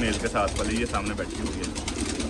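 Domestic pigeons cooing in a loft, a soft repeated rolling coo.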